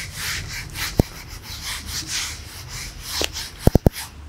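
Whiteboard duster wiping marker writing off a whiteboard in repeated back-and-forth strokes, with a few sharp knocks near the end.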